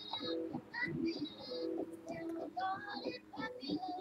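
A song sung in a child's voice, with held notes and short phrases.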